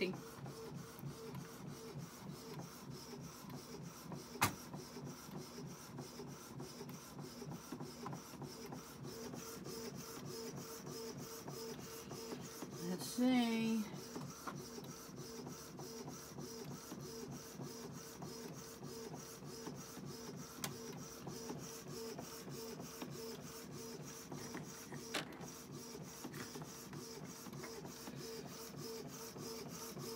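Canon PIXMA G3270 MegaTank inkjet printer printing a 4x6 photo: a steady hum with a fast, even mechanical rhythm as the carriage and paper feed run. A sharp click sounds about four and a half seconds in, and a fainter one near 25 seconds.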